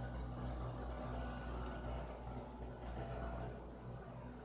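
Faint steady low hum over light background noise, with no speech: a pause in a voice recording.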